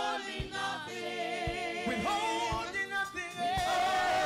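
A small worship group singing a gospel song together in harmony through microphones, over a low beat about once a second.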